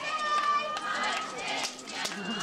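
A girl's voice shouting one long, high call that is held for most of the first second, followed by shorter shouts.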